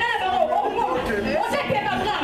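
Speech: several voices talking over one another.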